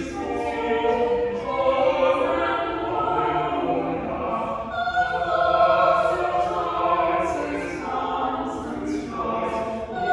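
Choir singing, with long held notes and sung words.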